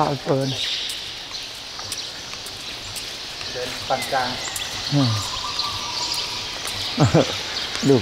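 A man speaking Thai in short phrases, with gaps between them, over a steady high-pitched background hiss of ambience.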